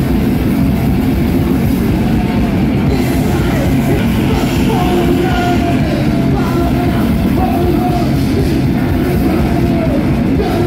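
Thrash metal band playing live and loud: distorted electric guitars, bass and pounding drums, with the singer's vocals through the microphone.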